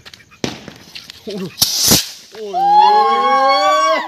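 A Diwali firework lit on the ground goes off: a sharp crack, then about two seconds in a short, loud burst of hissing noise. It is followed by a long, drawn-out shout from a person that slowly rises in pitch.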